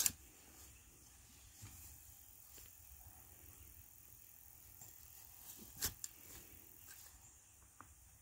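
Faint scraping and crunching of a hand digging fork working through loose, dry soil around sweet potato tubers. There is a sharp knock right at the start and another about six seconds in, with a few soft ticks between.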